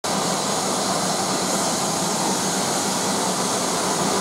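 Steady, loud hiss of steam from the rebuilt Bulleid Merchant Navy class steam locomotive 35028 Clan Line, with a faint low hum under it.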